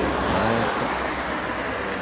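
A car passing by on the road, its noise swelling about half a second in and then fading.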